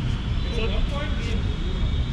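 Men talking briefly over a steady low rumble.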